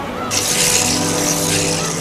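Rushing water noise that starts suddenly a third of a second in and keeps on steadily, over background music.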